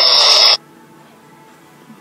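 Film soundtrack music playing through a portable DVD player's small speaker, loud and dense, cutting off abruptly about half a second in and leaving only quiet room tone.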